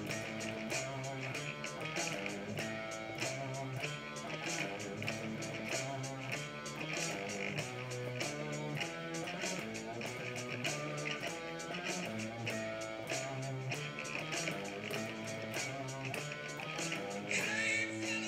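Strat-style electric guitar playing a rock riff, along with a backing track that has a steady drum beat.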